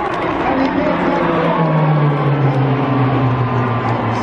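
Pilatus PC-7 Mk II turboprop trainers flying past in formation, their engine and propeller drone sliding steadily lower in pitch as they pass.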